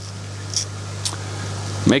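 Steady low machine hum, with a few faint soft ticks as a small paper reagent sachet is handled; a man starts speaking near the end.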